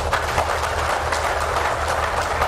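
Audience applauding: many hands clapping in a dense, even crackle, with a steady low hum beneath.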